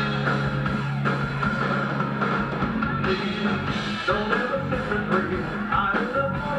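Live rock band playing electric guitar, bass and drum kit, heard from among the audience. A low note is held for the first couple of seconds before the band's playing gets busier.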